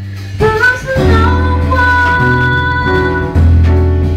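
A woman singing a melody into a microphone over guitar and bass accompaniment. Her voice rises in the first second, then holds one long note.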